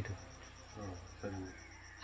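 Faint, steady high insect chirping in the background during a pause in speech, with two short, quiet voice sounds around the middle.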